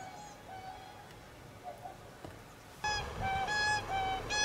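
Whooper swans calling: a few faint calls at first, then from about three seconds in a sudden run of short, loud calls in quick succession, several swans calling together.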